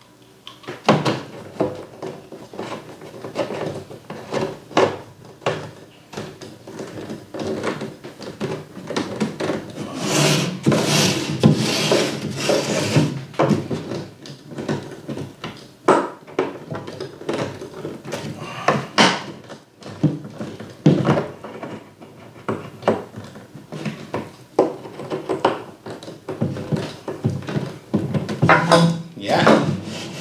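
Plastic frame of a leg massage machine being assembled by hand: irregular knocks, clicks and rubbing of the plastic parts, with a louder stretch of scraping about ten seconds in.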